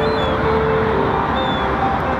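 Wind buffeting the microphone in a steady rush, with faint held music notes underneath and two brief high chirps.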